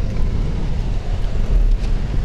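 An all-wheel-drive Dodge driving slowly through deep snow, heard from inside the cabin as a steady low rumble of engine and tyres.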